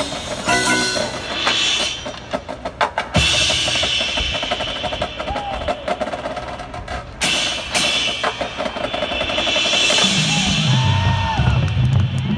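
Marching band field-show music led by its percussion: drums playing quick rolls and hits over sustained band tones, with a few sharp accented strikes along the way and a fuller low sound building near the end.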